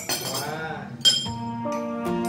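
A metal teaspoon clinks once against a ceramic coffee cup and saucer about a second in, with a short high ring after it. Soft background music comes in just after.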